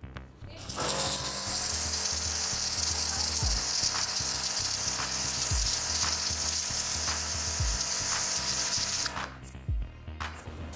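High-pressure water jet from a Bosch Advanced Aquatak 140 pressure washer, its adjustable nozzle fully open to a narrow, very strong beam, blasting against a palm tree trunk. It is a steady, loud hiss that starts about a second in and stops shortly before the end.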